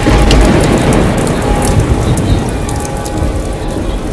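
Loud rushing noise with a deep rumble that starts abruptly and eases off a little toward the end: a metro train running in the station.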